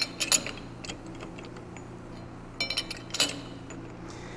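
Short metallic clicks and clinks from a four-jaw lathe chuck being adjusted with a chuck key around a bolt head: a couple near the start, then a quick ringing cluster about two and a half seconds in. A faint steady low hum runs underneath.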